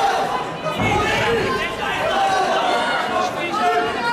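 Crowd in a large hall, many voices chattering and shouting over one another, with a dull thump about a second in.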